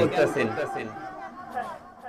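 Speech: a man's voice through a microphone finishes a word, then fainter background voices of listeners talking fill the rest, fading out toward the end.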